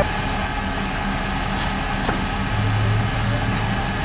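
Limousine running with a steady low engine hum, one sharp click about two seconds in.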